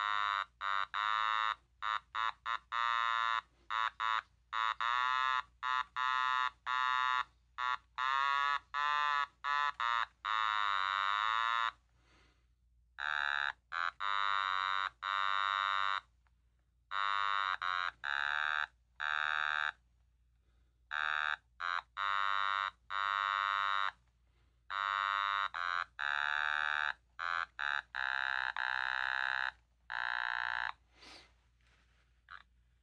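Otamatone played as a melody: a buzzy electronic tone in quick short notes, bending and wobbling in pitch, with short pauses between phrases.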